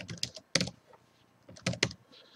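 Typing on a computer keyboard: a quick run of keystrokes, a pause of about a second, then a few more keystrokes near the end.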